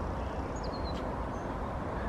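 Steady low outdoor background noise with two or three faint, short, high bird chirps.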